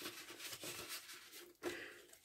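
Faint rustling of paper as a paper pocket and the pages of a handmade junk journal are handled and folded back.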